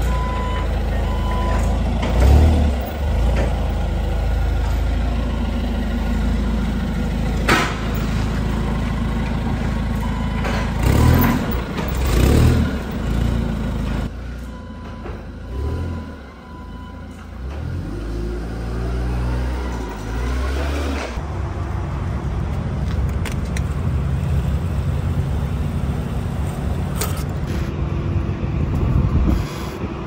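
Hyundai LPG forklift engine running and revving as the forklift drives and lifts pallets, with its reversing beeper sounding in short spells and several sharp clanks from the forks and pallets.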